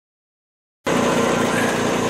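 Silence, then a bench grinder's motor cuts in abruptly a little under a second in, running steadily with an even hum and whine while nothing is being ground.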